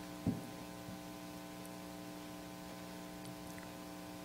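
Steady electrical mains hum through the microphone and sound system, with one brief low thump shortly after the start.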